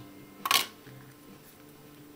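A single brief scrape of cardboard about half a second in, from the white cardboard instruction packet of an iPhone box being handled.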